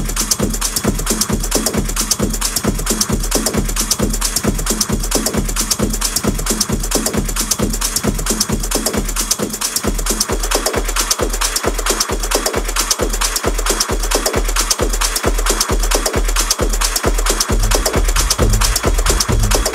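A techno DJ mix with a steady four-on-the-floor kick drum at about two beats a second under continuous hi-hats. About ten seconds in, the bass line above the kick drops out, leaving the kick bare, and it comes back just before the end.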